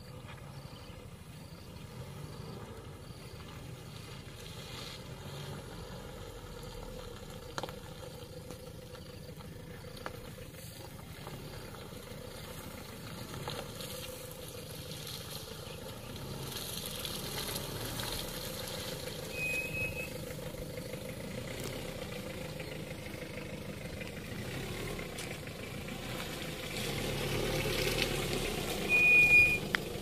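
Mitsubishi L300 pickup's engine running at low revs as it approaches slowly over a rutted mud road, growing steadily louder as it draws near.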